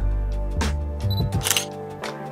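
Background music with a steady beat. About a second in, a short high beep is followed by a camera shutter click, like a camera's focus-confirm beep and shutter release.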